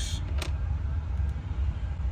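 Steady low background rumble. One small, faint click about half a second in as a tiny wafer spring is fitted into a car lock cylinder by hand.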